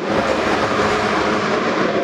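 A steady rushing, rumbling noise that cuts in and cuts off abruptly, with no speech over it.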